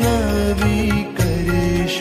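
Devotional Hindu–Jain arti music: a chant-like melody with rhythmic percussion accompaniment, continuous and loud.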